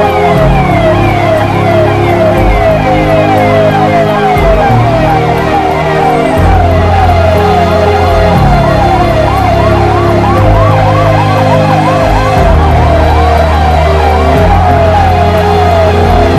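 Emergency-vehicle siren wailing in a fast, repeating rise and fall, over background music with held low bass notes.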